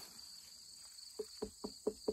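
A hand knocking on a watermelon, about four quick short knocks in the second half, as a thump test of ripeness; the melon sounds about ready. Steady insect chirring runs underneath.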